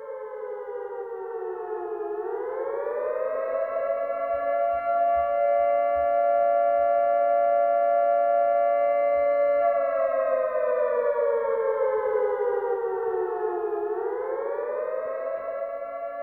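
A siren wailing on a two-note chord. Its pitch sinks, climbs and holds high for several seconds, then slowly sinks and climbs again near the end.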